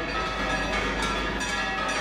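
Church bells pealing: several bells struck again and again, their ringing tones overlapping.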